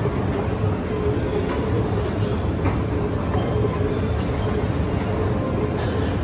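Airport moving walkway running: a steady mechanical rumble with a low hum, with no breaks or sudden sounds.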